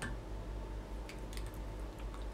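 Quiet room tone with a steady low hum, and a few faint ticks a little past the middle from the thread and bobbin being handled at a fly-tying vise.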